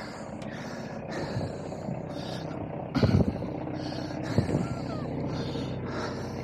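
Narrowboat's diesel engine idling steadily, with a couple of short thumps about three and four and a half seconds in.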